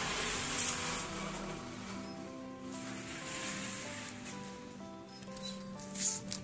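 Background music, a simple melody of short notes, with a brief whoosh sound effect near the end.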